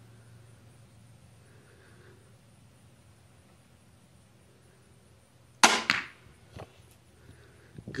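A Barnett Jackal crossbow (150-pound draw, synthetic string and cable system) firing a bolt about five and a half seconds in: one sharp, loud snap of the string and limbs releasing that rings off briefly, then a fainter knock under a second later.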